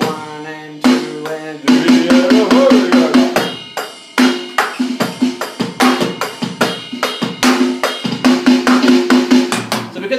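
Electronic drum kit playing a steady beat, with a rapid sixteenth-note single-stroke fill every second bar. The fills come twice: a couple of seconds in and again near the end.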